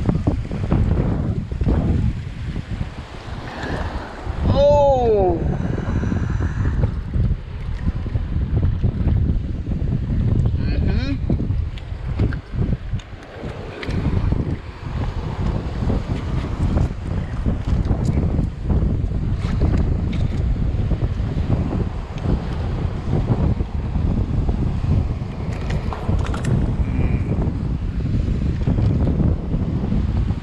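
Wind buffeting the camera microphone in a steady low rumble, with waves washing on rocks underneath. About five seconds in, a short falling whistle-like tone.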